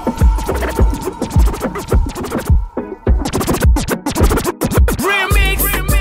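DJ mix with turntable scratching cut over a steady kick-drum beat, briefly dropping out about two and a half seconds in. Near the end a new track's wavering melody line comes in.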